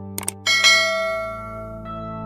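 Two quick mouse clicks, then a bright bell chime that rings out and fades over about a second: a notification-bell sound effect, over soft background music.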